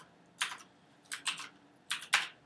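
A few separate computer keyboard keystrokes, short sharp clicks spaced unevenly over the two seconds.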